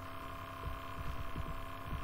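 Steady electrical mains hum in the recording, with a few faint low knocks.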